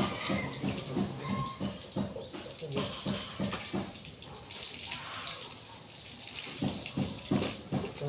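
Water splashing in a bucket and on a wet concrete floor during a hand car wash, with a few short, sharp sounds near the end.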